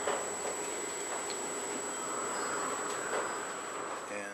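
Steady room noise with a thin, constant high whine, over faint small clicks and rustles of serving thread being pulled tight around a bowstring.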